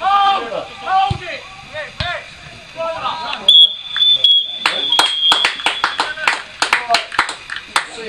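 Referee's whistle blown in one long, steady, high blast of about two seconds, the full-time whistle, followed by a few seconds of scattered hand claps. Shouting voices come before the whistle.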